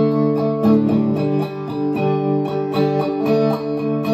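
Solo electric guitar coming in suddenly: a ringing chord with notes picked over it at a steady pulse, the opening of a song.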